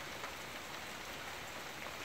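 Steady rain falling outside, a soft, even hiss with no distinct drops or knocks.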